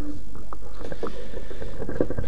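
Steady low electrical hum and hiss from the microphone and sound system, with a few light knocks.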